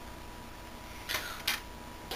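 Two short, soft handling scuffs about a second in, half a second apart: a hand moving small foam blocks on a tabletop. A faint steady electrical hum runs underneath.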